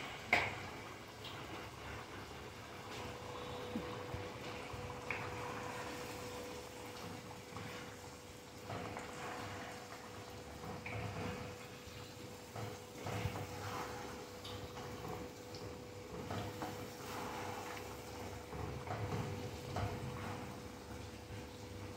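Wooden spatula stirring and scraping chicken pieces through a thick yogurt sauce simmering in a pan, in quiet irregular strokes. A steady faint hum runs underneath.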